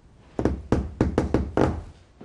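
Knocking by hand on a panelled wooden door: a quick run of about six knocks starting under half a second in, ending just before the two-second mark.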